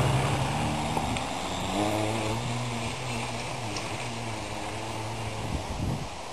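BionX PL-350 electric hub motor on a cargo bike whining steadily under throttle as the bike rides away, the tone coming in about two seconds in and fading slowly, over wind noise on the microphone.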